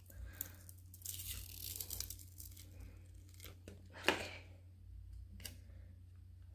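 Vinyl sticker's paper backing being peeled away from its transfer tape: a faint papery tearing and crinkling with a few small clicks.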